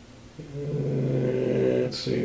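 A man's low, drawn-out vocal hum, one steady held tone starting about half a second in and lasting about a second and a half, as he reads a label.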